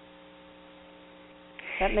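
Steady low electrical hum on the audio line, heard alone in a pause; a voice starts speaking near the end.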